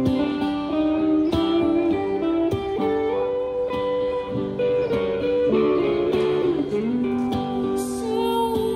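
Live electric and acoustic guitars playing an instrumental passage together: regular strummed chords under held lead notes, with a few notes bending in pitch past the middle.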